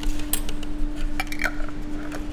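Small spoons scraping and tapping on plastic plates and glass jars, a few light clicks, over a steady low hum.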